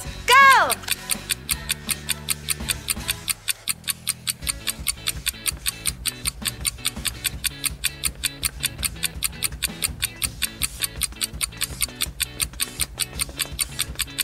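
Countdown timer ticking fast and evenly, several ticks a second, over background music; a brief voice exclamation comes just at the start.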